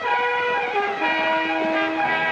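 Orchestral music from a 1930s film trailer score: sustained chords that step down to a lower held chord about a second in.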